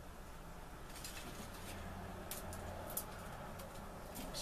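A small kindling fire burning quietly, with a few faint crackles about two and a half and three seconds in, over a low steady hum.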